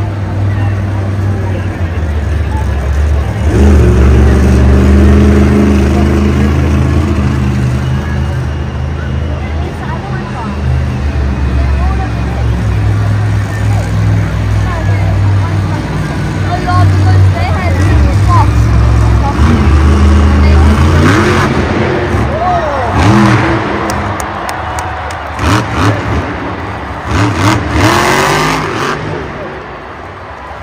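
Grave Digger monster truck's supercharged engine revving hard as it drives the dirt course, its pitch rising and falling. The engine drops back after about twenty seconds, and several sharp knocks follow near the end as the truck hits the ramps.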